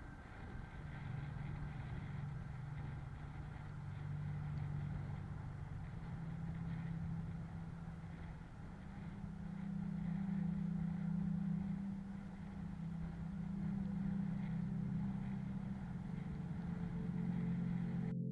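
Low drone of a bicycle rolling on a paved path, picked up by a bike-mounted camera, that rises in pitch and gets louder about halfway through and again near the end as the bike speeds up.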